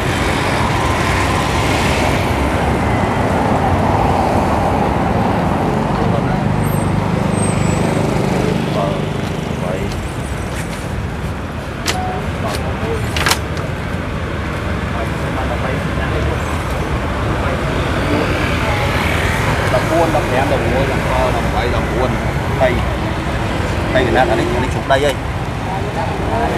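Steady street traffic noise, a continuous low rumble of passing vehicles, with people talking in the background, clearer near the end. A few sharp clicks sound around the middle.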